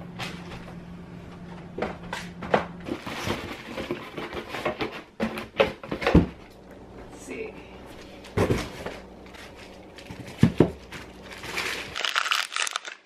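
Cardboard shipping boxes and mailer packages being handled and set down: an irregular run of knocks and thumps with rustling between them, loudest about halfway through and again near the end.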